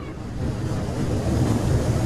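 A rushing whoosh sound effect with a deep rumble, swelling steadily louder, for an animated smoke logo reveal.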